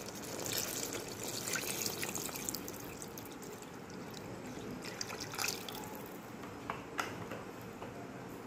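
Water pouring from a plastic jug into a pressure cooker pot of masala, splashing into the liquid, stronger in the first few seconds, with a light click about seven seconds in.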